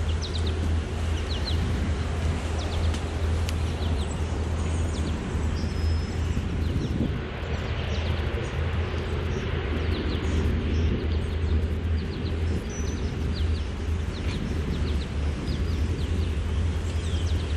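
Steady low drone of a boat's Mercruiser 7.4-litre V8 inboard running at slow canal speed, with birds chirping now and then.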